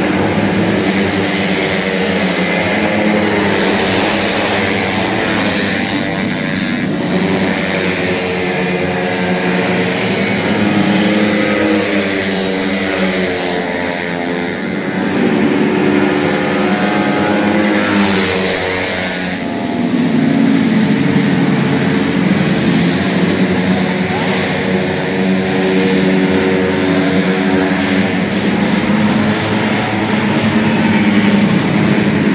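Engines of several racing 150cc automatic scooters, held at high revs, their pitch rising and falling as the riders accelerate and brake through the corners.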